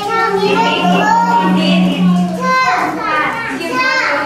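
Young children chattering and calling out together in a classroom, many high voices overlapping. A low steady tone sounds under them and stops about two-thirds of the way through.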